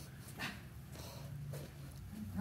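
A small puppy makes one brief sound about half a second in, over a steady low room hum.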